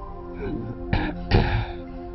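An ill elderly man clearing his throat in two short, hoarse bursts about a second in, over soft sustained background music.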